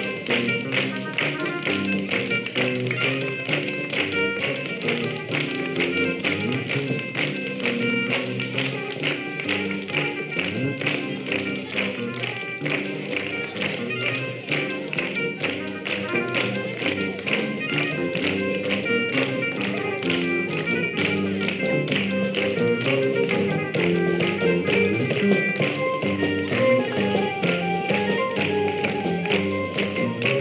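A song with a steady beat of hand claps: a group of children clapping along in rhythm to the music.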